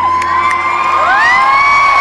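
Concert audience cheering and screaming as a song ends, with high voices near the microphone sweeping up into long held whoops and squeals.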